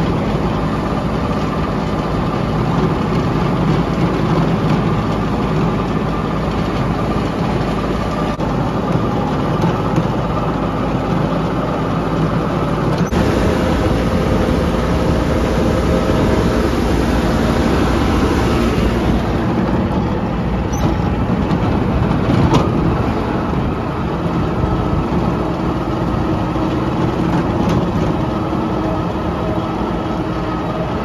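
New Holland compact tractor's diesel engine running steadily under load while it drives a King Kutter II rotary tiller through the soil. The note changes about halfway through.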